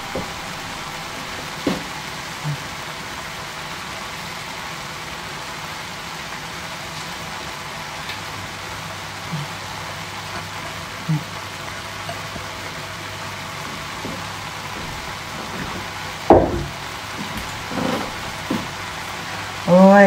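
Shredded cabbage and minced chicken sizzling steadily in a frying pan. There are a few light knocks, with a sharper one about sixteen seconds in.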